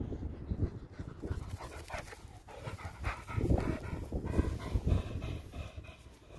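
Springer spaniel panting in quick, repeated breaths.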